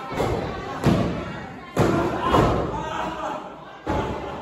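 Four hard thuds on a wrestling ring's mat, about a second apart, with shouting voices between them.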